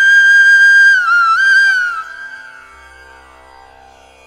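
A flute in devotional Indian-style music holds one long steady note, then plays a short ornamented phrase with pitch bends about a second in. It fades out about two seconds in, leaving only a faint sustained accompaniment.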